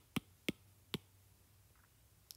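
Three short, sharp clicks within the first second, spaced roughly a third to half a second apart: taps while typing on a tablet's on-screen keyboard.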